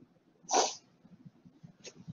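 A single short sneeze about half a second in.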